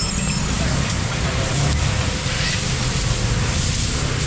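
Busy market background: a steady low rumble with indistinct voices, and no single event standing out.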